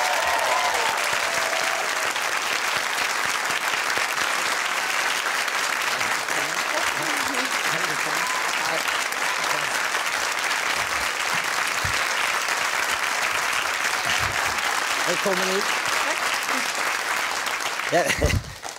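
Studio audience applauding steadily, with a few voices faintly heard under the clapping.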